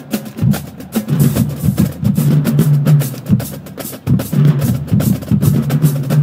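Marching drumline playing: snare drums, tenor drums and bass drums in a fast run of sharp strokes over ringing low bass-drum notes.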